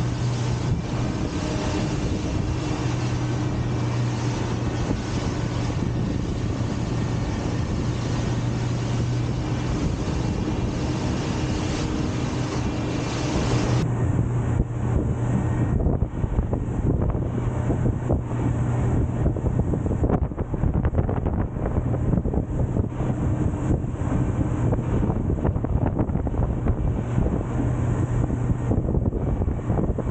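Suzuki outboard motor running steadily at cruising speed, with water rushing along the hull and wind buffeting the microphone. About halfway through, the wind noise becomes louder and gustier.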